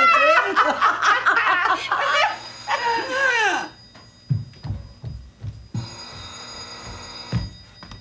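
Women laughing heartily, then a telephone ringing twice, each ring about a second and a half long, the first over the tail of the laughter. Soft low thuds fall between and during the rings.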